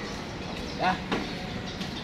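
Steady outdoor traffic noise, with a man briefly saying "ya" a little under a second in.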